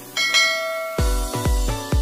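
A bright bell-like chime sound effect rings and fades. About a second in, electronic dance music with a strong bass beat starts, about three beats a second.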